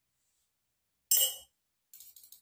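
A metal spoon clinks once against a small glass bowl of salt about a second in, with a short ringing tail.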